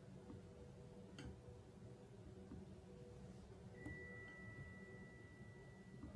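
Near silence: quiet room tone with a few faint computer-mouse clicks. A faint steady high-pitched tone comes in about two-thirds of the way through.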